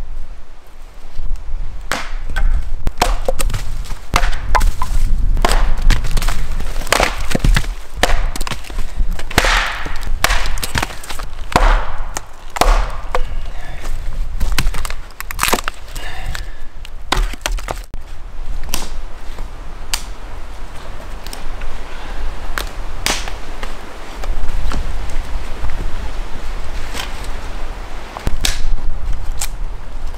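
Firewood being split on a wooden chopping block: a run of sharp, irregular chopping strikes with wood cracking apart. The strikes come thickest in the first half.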